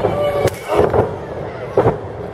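Two impacts: a sharp smack about half a second in, then a heavy thud near the end as a wrestler is knocked down flat onto the ring canvas, with crowd voices behind.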